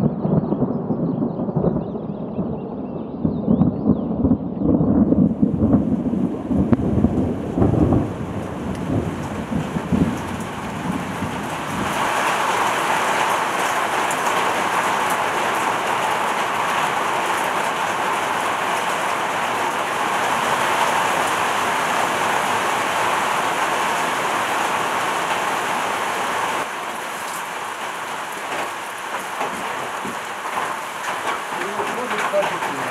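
Thunder rumbling through the first ten seconds or so while rain comes in, then steady heavy rain from about twelve seconds on, a little quieter near the end.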